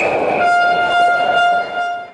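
Arena goal horn blowing one long steady blast over crowd noise as a goal is scored. A brief high whistle sounds just before it. Everything fades out near the end.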